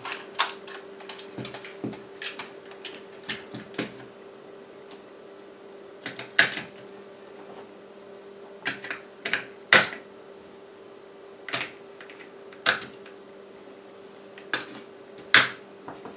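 AA batteries being pressed one by one into the KX3's spring-contact battery holder: a string of sharp plastic-and-metal clacks a second or two apart, with lighter handling clicks of the case at first. A faint steady hum runs underneath.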